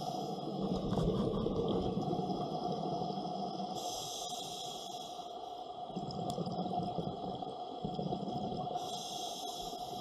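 Underwater sound of scuba breathing: a rush of exhaled regulator bubbles about every five seconds, about four seconds in and again near the end, over a steady tone.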